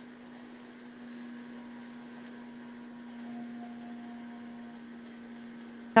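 Steady low hum and hiss of background noise coming over a video-call line, with a faint higher tone briefly in the middle. It is the noise of the caller's end, which is a bit noisy.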